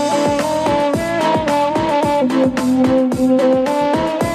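Live Minangkabau music: a saluang bamboo flute playing a stepping melody over electronic keyboard accompaniment with a steady programmed drum beat.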